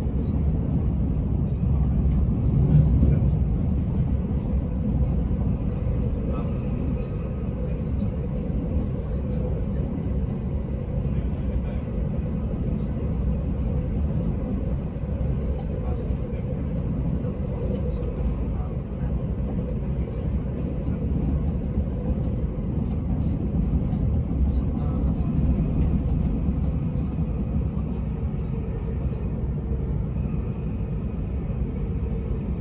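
Bombardier Class 387 Electrostar electric multiple unit heard from inside the coach while running at speed: a steady low rumble of wheels on rail, with faint scattered ticks.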